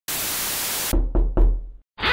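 Logo sound effect: a steady hiss that cuts off sharply just under a second in, then three deep thumps in quick succession that die away.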